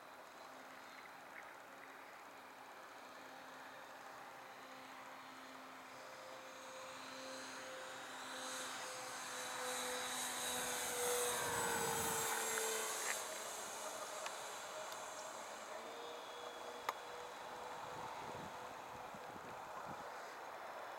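Hangar 9 Twin Otter radio-controlled model airplane's twin motors droning in flight. The sound grows louder as the model makes a low pass, peaks about twelve seconds in with the pitch dropping as it goes by, then fades as it climbs away.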